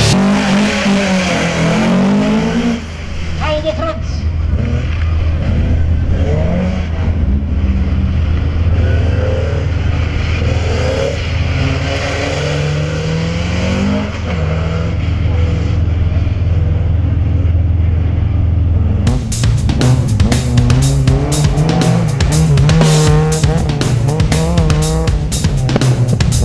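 Opel Kadett C race car's engine revving up and down as it is driven hard through a slalom course. About three-quarters of the way through, the engine sound gives way abruptly to rock music with drums.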